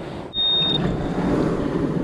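A metal detector gives a single short high beep about a third of a second in, while a steady rushing noise starts up and carries on.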